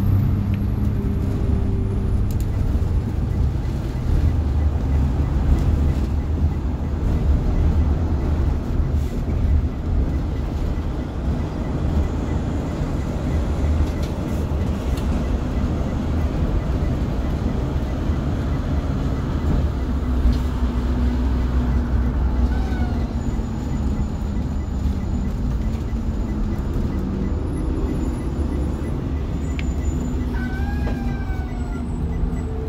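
Engine and road noise heard from the driver's seat of a 2008 Blue Bird school bus under way on a city street: a steady low rumble, with the engine note shifting in pitch about two-thirds of the way through as the bus changes speed.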